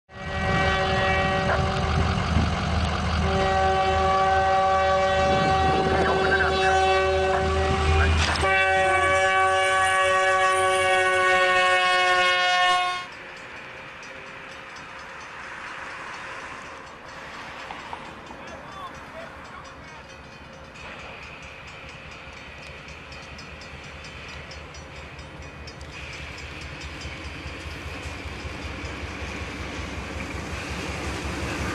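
Locomotive air horn sounding a long, loud chord over the low rumble of a train for about the first thirteen seconds, with a short break near three seconds. It cuts off suddenly, leaving a quieter steady rushing noise of a train that grows slowly louder toward the end.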